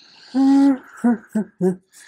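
A woman's voice making one held "oooh" and then three short hooting syllables, like a nervous laugh.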